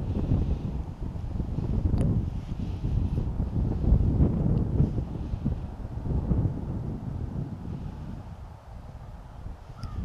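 Gusty wind buffeting the microphone: a low, uneven rumble that swells and dips and eases off near the end.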